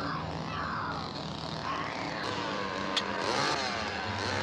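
An engine runs steadily on a film soundtrack, most likely the truck's. A sharp clack comes about three seconds in, then the engine revs up and down near the end.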